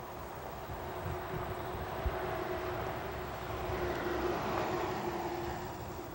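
Distant engine hum with a droning tone that swells around the middle and eases off near the end.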